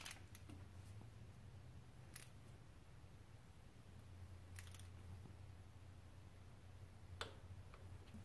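Near silence over a low steady hum, with a few faint scattered clicks of a torque wrench and socket as the timing belt tensioner nut is torqued down.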